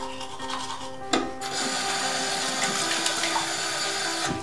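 Background music with a sharp click about a second in, then a steady hissing noise of tooth-brushing at a bathroom sink.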